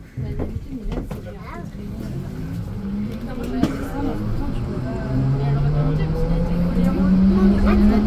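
Rennes metro line B rubber-tyred Siemens Cityval train pulling away from a station. The traction motors give a whine that climbs steadily in pitch as it accelerates, over a running-gear rumble that grows louder. Passengers' voices are faintly heard in the car.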